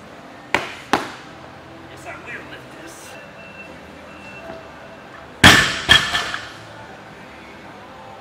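A loaded barbell with rubber bumper plates dropped onto rubber gym flooring after a power snatch attempt: a loud crash about five and a half seconds in, a second hit as it bounces, then smaller rattles as it settles. Two sharp smacks about half a second and one second in come before the lift.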